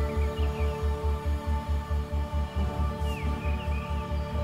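Ambient background music: a steady low pulse of about five beats a second under long held tones. A few brief high chirps come about half a second in and again near the end.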